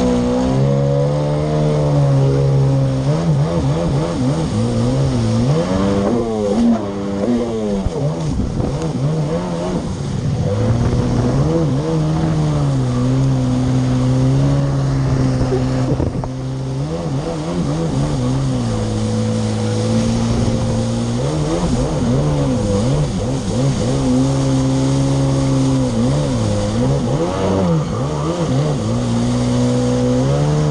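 Yamaha SuperJet stand-up jet ski's two-stroke engine running under way. Its pitch holds steady for stretches, then swings quickly up and down several times as the revs rise and fall.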